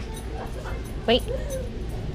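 A single short spoken command, "wait", given about a second in, over a steady low background hum.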